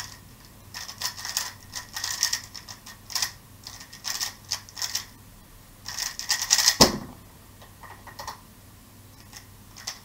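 A magnetic 3x3 speed cube (MF3RS M 2020) turned fast in a speedsolve: quick bursts of plastic clicking layer turns with short pauses between them. A single loud knock about seven seconds in marks the end of the solve, after which only a few faint clicks remain.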